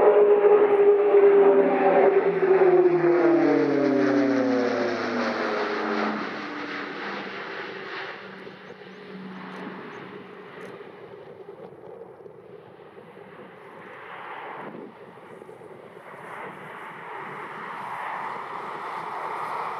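Airbus A400M Atlas's four TP400 turboprops and eight-bladed propellers passing low overhead at speed. The propeller tones slide steadily down in pitch and fade over the first six seconds as the aircraft passes and goes away, leaving a distant rumble that swells again near the end as it banks.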